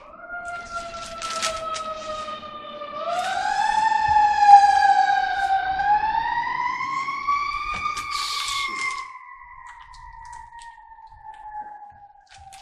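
An emergency vehicle's wailing siren: one pitched tone that comes in suddenly, rises and dips slowly twice, is highest about eight seconds in, then sinks slowly and fades. Paper pages rustle briefly near the start and again around eight to nine seconds in.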